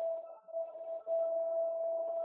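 A muezzin's voice holding one long, steady note of the Islamic call to prayer (azan).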